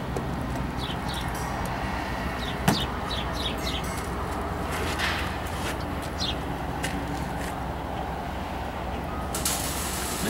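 Steady low background hum with a few faint, short high chirps scattered through, and a single sharp knock about two and a half seconds in.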